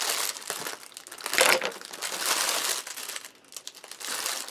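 Clear plastic packaging bag crinkling and rustling as it is handled, in irregular bursts, loudest about a second and a half in.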